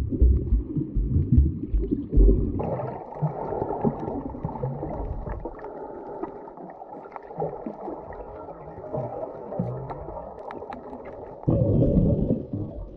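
Underwater sound picked up by a camera held below the surface: muffled low thumping of water moving against the camera for the first couple of seconds, then a softer, steady muffled wash that fades, with a short louder low swell near the end.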